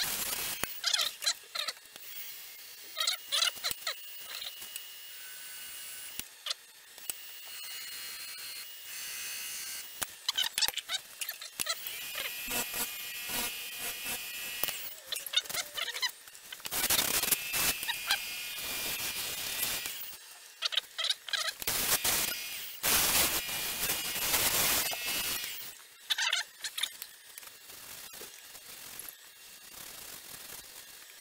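Sanding pad pressed against a sugar pine bowl spinning on a lathe: scratchy rubbing in uneven passages with squeals, louder in two stretches in the second half. The friction is heating and scorching the soft wood.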